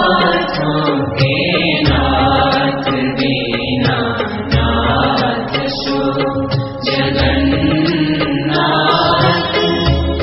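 Devotional Hindu music: chanted vocals over a deep drum beat that falls about every two and a half seconds.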